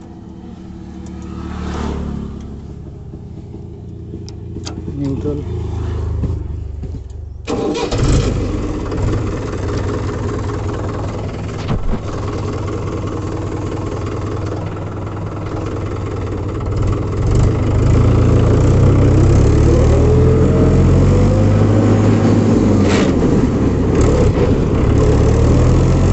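Tractor diesel engine running, at first low and steady, then suddenly much louder about seven seconds in as the tractor gets under way. In the second half the engine note rises and falls as it is driven along.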